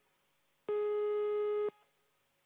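Launch-control countdown beep: a steady, mid-pitched electronic tone lasting about a second, starting a little over half a second in, one of a series repeating every two seconds through the final countdown.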